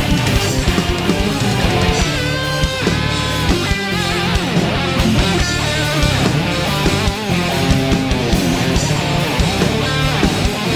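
Live rock-style worship band playing an instrumental passage: distorted electric guitar to the fore over bass, keyboards and drums, with bent, gliding notes a few seconds in.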